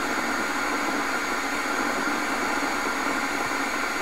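Steady hiss from a homemade Tesla-coil-type high-voltage coil running while it charges a drained battery, even and unchanging throughout.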